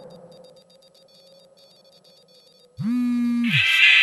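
Faint, evenly spaced electronic beeps, then about three seconds in loud electronic music cuts in with a deep bass note that swoops up, holds and drops away, under a rising wash of higher synth tones.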